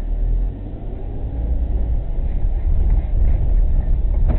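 Low, steady rumble of a car's engine and road noise heard from inside the cabin as the car pulls slowly away from a stop.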